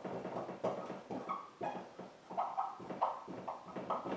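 Dry-erase marker writing on a whiteboard: a string of short, irregular strokes and squeaks as the words are written out.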